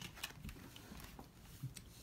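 Faint, scattered clicks and light rustles of Pokémon trading cards being handled and set down on a wooden floor.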